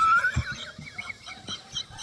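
Men laughing hard: a high-pitched squealing laugh that rises at the start, then dies away into short, quieter squeaky gasps.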